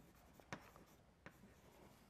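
Near silence with a few faint taps of chalk writing on a blackboard, two of them plainer than the rest.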